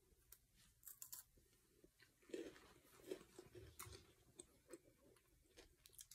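Faint crunching and chewing of a chocolate-coated Kit Kat wafer, a few soft crunches and small clicks scattered through otherwise near silence.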